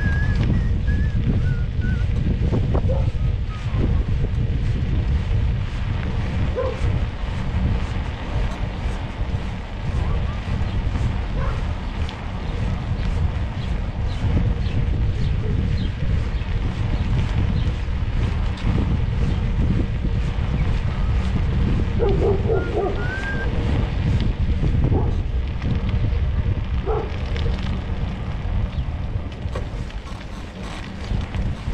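Wind buffeting the microphone of a camera carried on a moving bicycle, a steady low rumble.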